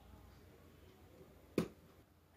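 Near silence with a single short, sharp click about one and a half seconds in.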